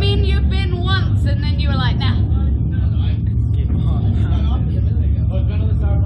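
Two people talking, loudest in the first two seconds, over a steady low rumble.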